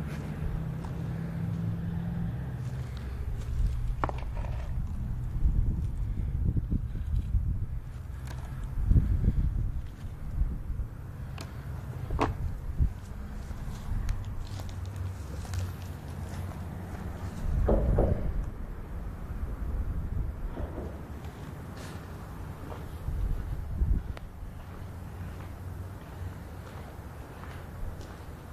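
Footsteps on dry grass and dirt with irregular thumps and a few sharp clicks from the handheld camera. A low steady traffic rumble fades out in the first two or three seconds.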